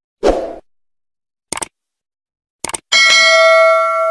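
Subscribe-button animation sound effects: a short pop, a single click, a quick double click, then a loud bell ding that rings on and slowly fades.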